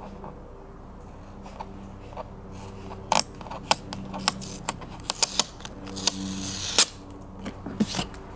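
A fingernail picking at and peeling a factory sticker off a generator's plastic panel: a run of sharp clicks and crackles through the middle, and a short tearing hiss near the end as the sticker comes away, over a steady low hum.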